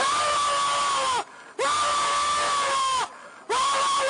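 A man letting out three long, loud, high-pitched wailing cries, one after another. Each holds a steady pitch for over a second and drops off at the end, with short breaks between them.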